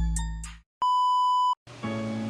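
Intro music fading out, then a single steady electronic beep at about 1 kHz lasting under a second, followed near the end by background music starting up.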